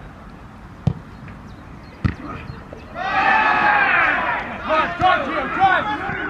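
Two sharp thuds of a football being kicked on an artificial pitch, about a second apart near the start. From about halfway through, men's voices shout loudly on the pitch, with several calls overlapping.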